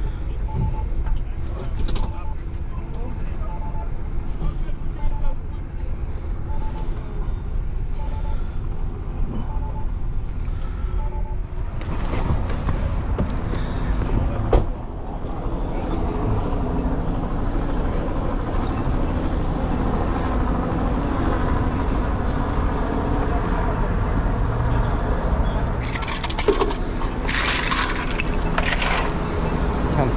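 A car's electronic warning chime beeping about every second and a half inside the car cabin, over a low rumble. About twelve seconds in, this gives way to steady traffic and vehicle engine noise in the street, with faint voices.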